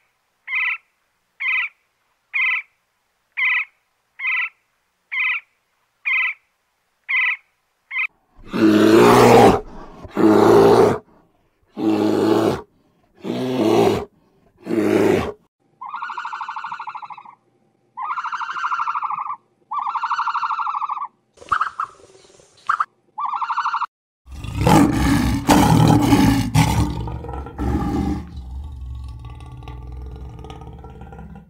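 A woodpecker calling, a short sharp note about twice a second, stopping about 8 s in. It is followed by five loud, rough animal calls about a second and a half apart, then a run of clearer pitched calls. Near the end comes a loud lion roar that fades.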